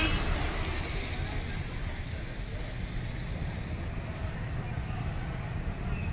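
Street traffic: a car passes close by, its hiss fading over the first couple of seconds, over a steady low rumble of road traffic.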